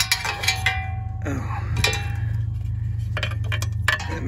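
Small metallic clicks and clinks, a few ringing briefly, as a new oxygen sensor is handled and threaded by hand into the exhaust pipe. A steady low hum runs underneath.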